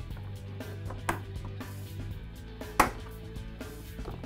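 Plastic trim cover on an E-Z-Go RXV golf cart being pried off, giving two sharp snaps, one about a second in and a louder one near three seconds, over background music.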